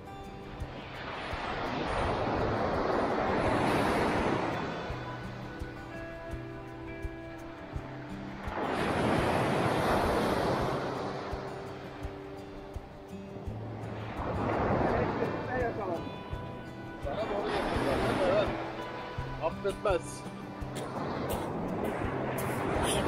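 Surf breaking on a pebble-strewn beach, rushing in and out in four swells about every four to six seconds, over a bed of background music with sustained tones.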